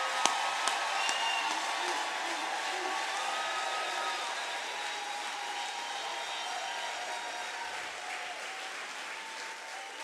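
Audience applauding at the end of a show, the applause slowly dying away.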